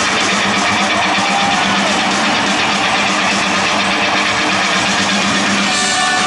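Live rock band in an arena under loud crowd noise, with a held low note sustained beneath it; the guitar comes back in clearly near the end.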